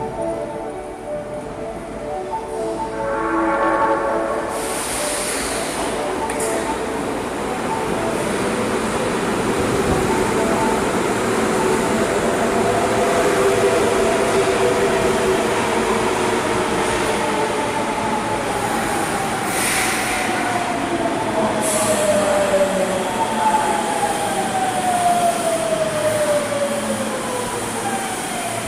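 An Osaka Metro Midosuji Line subway train pulling into the station. The rush of the cars builds, and from about halfway through the motors' whine falls steadily in pitch as the train brakes, with short bursts of hiss. In the first few seconds a platform arrival melody is still sounding.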